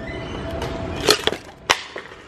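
Clear plastic drinking bottle and tumblers being handled on a shop shelf: three sharp plastic clicks and knocks, about a second in, just after, and near the end, over a faint steady background hum.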